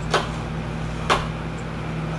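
Two sharp plastic-and-metal clicks about a second apart as a ring light is fitted onto the mount at the top of its tripod stand, over a steady low hum.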